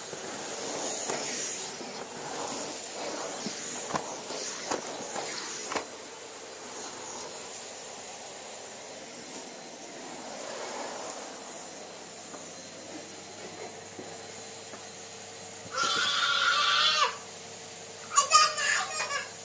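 Numatic Henry vacuum cleaner running with a steady whine as its floor nozzle and wand are worked over carpet, with a few knocks a few seconds in. Near the end a child gives a high-pitched squeal lasting about a second, the loudest sound.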